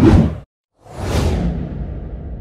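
Whoosh sound effects for an animated logo: a short whoosh, a brief gap of silence, then a longer whoosh that fades away.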